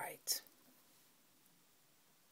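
The last of a spoken word and a short breathy sound, then near silence: faint room tone.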